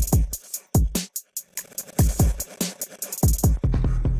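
Electronic drum pattern played by the iZotope BreakTweaker drum machine plugin: deep kicks that slide down in pitch, with crisp hi-hat and snare hits between them in a quick, steady rhythm. A held low bass note comes in near the end.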